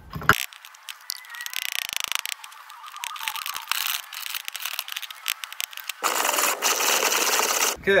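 Stone mortar and pestle grinding a lump of scheelite (calcium tungstate ore) into a fine powder: a continuous gritty scraping of the pestle against the mortar, which gets louder and fuller about six seconds in.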